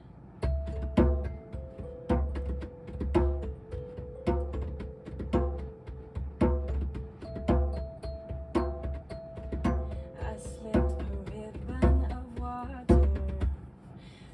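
Instrumental song intro played by a band: a steady beat with a low drum hit about once a second, each hit landing with pitched instrument notes.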